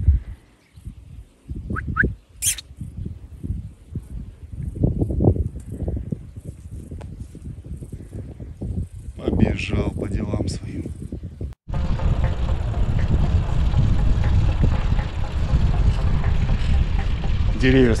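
Wind buffeting the microphone: gusty low rumbles at first, with a brief high chirp about two and a half seconds in. After a sudden cut near twelve seconds comes a steady, louder wind rush while riding a bicycle.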